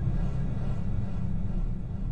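Dark, low droning background music with no clear beat or melody.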